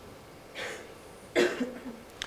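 A person coughing: a short breathy hack about half a second in, then a louder, sharper cough at about a second and a half.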